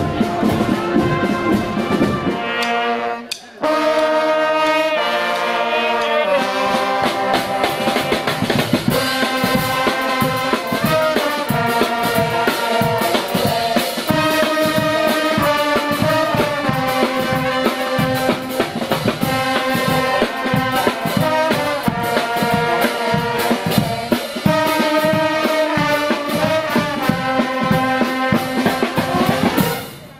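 A street brass band plays an upbeat tune, with saxophone, trumpets and trombone over marching drums. The music breaks off briefly about three seconds in, then goes on steadily.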